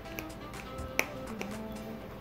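Quiet background music with sustained notes, and one sharp click about a second in as pliers work the master link of a bicycle chain.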